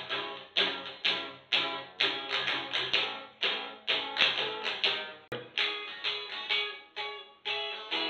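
Guitar music with rhythmic strummed chords, about two strokes a second, each stroke ringing out before the next.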